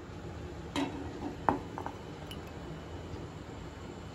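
A steel ladle clinking against a pan and a white ceramic bowl while thick semolina kheer is ladled out, a few sharp clinks with the sharpest about a second and a half in.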